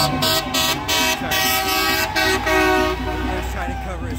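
Car horns honking in long steady blasts, overlapping at different pitches, with crowd voices shouting over them near the end.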